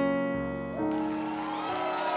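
Grand piano playing slow, sustained chords as a ballad accompaniment: one chord struck at the start and a new one a little under a second in, each left to ring.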